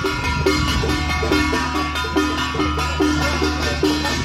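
Temple procession percussion: small hand-held gongs and cymbals beaten in a quick, steady rhythm, about three strokes a second.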